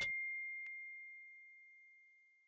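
A single high chime tone from a logo sting, ringing on and fading away, with one faint tick about two-thirds of a second in.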